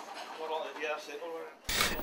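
A metal utensil scraping and rubbing in a frying pan, with faint voices in the background. Near the end a much louder voice cuts in.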